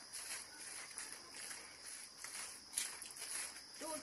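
Faint, steady outdoor background hiss with a few light taps or rustles.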